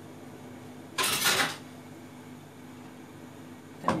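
A brief rustling scrape, about half a second long, about a second in, as kitchen things are handled, over a faint steady hum.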